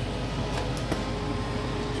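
Steady mechanical hum and hiss of a running fan-type appliance, with a faint steady tone and a couple of faint clicks a little under a second in.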